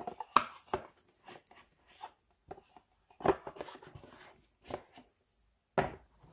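A kpop CD album's cardboard box and printed paper inserts being handled: a series of short knocks and papery rustles, with a longer rustle of paper about three seconds in.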